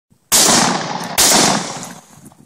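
Two shotgun shots fired at a flying pheasant, about a second apart, each trailing off in a long echo.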